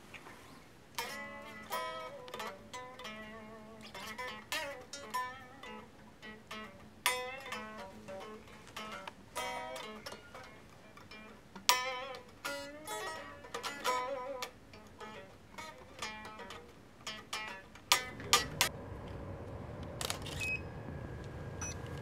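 Electric guitar picked with a pick, a run of single notes and small chords with short gaps between them. About 18 seconds in, the picking stops and a steady low background takes over.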